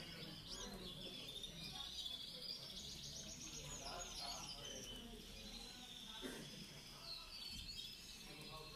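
Many caged canaries chirping and trilling together, with a fast trill about three seconds in.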